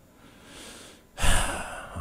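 A man breathing close to a microphone: a faint breath in, then a louder, sigh-like breath out about a second in.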